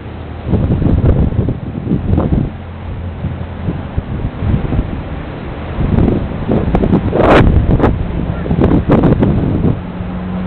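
Strong storm wind buffeting the camera microphone during a dust storm, a steady low roar with stronger gusts about six to seven and a half seconds in and again near nine seconds.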